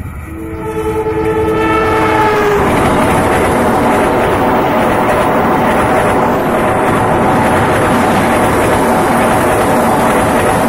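CC203 diesel-electric locomotive sounding its horn, a chord held for about two seconds whose pitch drops as the locomotive passes, then the locomotive and its passenger coaches rolling by with a steady rumble and clatter of wheels on rail.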